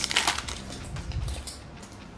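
A bag of Lay's sour cream and onion potato chips crinkling as it is grabbed and handled. A dense burst of crackling in the first half second gives way to lighter, scattered crinkles that fade out.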